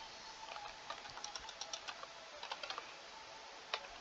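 Faint, irregular keystrokes on a computer keyboard as a short stretch of code is typed.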